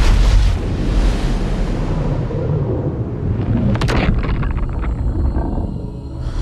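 Film sound effect of a giant shark breaching: a huge, sudden splash with a deep boom, followed by rushing, falling water that slowly dies away, with a few sharp cracks about four seconds in.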